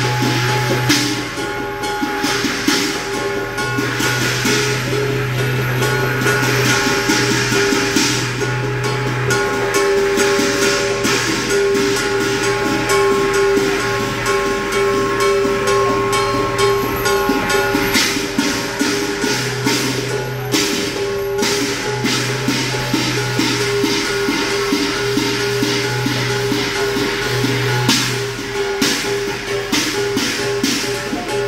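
Chinese percussion for a qilin dance: a drum and clashing hand cymbals played in a fast, continuous rhythm, the metal ringing on between strikes.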